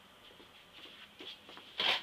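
Faint rustling and shuffling of a person walking back and sitting down in a chair, with a short breathy noise near the end.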